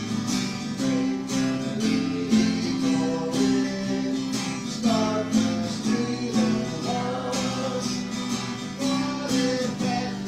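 Hymn music led by a strummed acoustic guitar in a steady rhythm, with a melody line over it.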